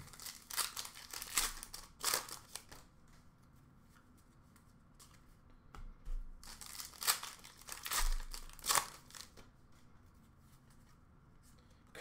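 Thick chrome trading cards being handled: stiff cards sliding and flicking against one another in short papery bursts. There are two clusters of this, the first in the opening few seconds and the second from about halfway through, with a quiet gap between them.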